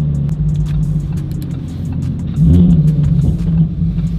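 Car engine and road noise heard from inside the cabin while driving, a steady low drone that swells briefly a little over halfway through as the car picks up speed.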